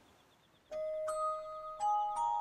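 Near silence, then a music box starts playing about two-thirds of a second in. Three single high notes come one after another, each ringing on as the melody begins.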